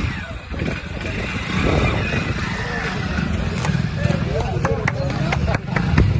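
A small commuter motorcycle's engine running as it is ridden, with people's voices around it and a few sharp clicks in the second half.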